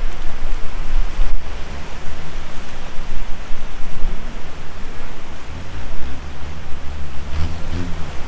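Small waves breaking and washing up the sand at the water's edge, with wind buffeting the microphone in a heavy, uneven rumble.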